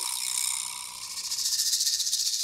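Suspense sound effect added in editing: a high, rapidly fluttering shimmer like a held shaker or cymbal roll. It eases about a second in and then builds again.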